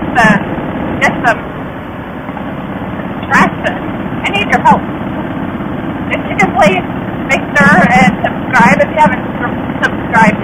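Riding noise from a 2005 Harley-Davidson Softail Fat Boy's V-twin running on the road, with steady wind rush on the helmet camera, under a woman's voice speaking in snatches.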